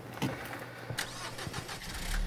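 A few sharp clicks inside a car's cabin, then the car's engine starting right at the end.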